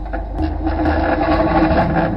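Hyperloop One's magnetically levitated test sled being fired down its steel tube by electromagnetic propulsion: a loud, steady buzzing drone over a deep rumble.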